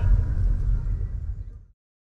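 Low rumbling background noise that fades out over about a second and a half, then cuts to silence.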